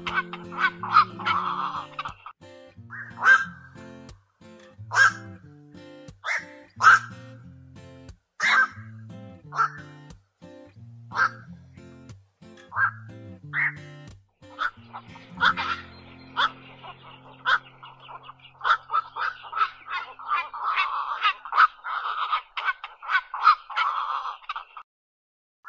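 Black-crowned night herons giving short, harsh calls over background music. The calls come in quick runs at the start and again near the end, and at spaced single calls in between. The music fades out about two-thirds of the way through.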